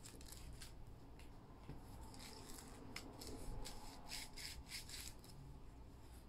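Fingers rubbing a patch of flip sequins on a board-book page: a faint, scratchy rustle in a run of short strokes.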